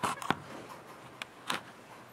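A few sharp knocks and clicks: two loud ones close together at the start, then two lighter ones about a second later.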